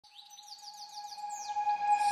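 Rapid bird-like chirps, several a second, over a steady held tone that fades in and grows louder: the opening of a background music track.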